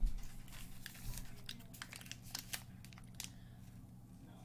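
A small paper snack packet being handled and crinkled: a run of irregular crackles and rustles, with a brief low bump right at the start.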